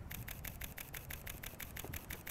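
Panasonic Lumix S1 mirrorless camera shooting a high-speed burst: a rapid, evenly spaced run of faint shutter clicks while the shutter button is held down.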